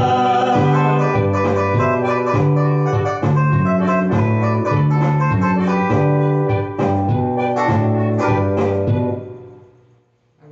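Electronic keyboard playing a song's instrumental ending: plucked, guitar-like notes over a stepping bass line in a steady rhythm, dying away about nine seconds in.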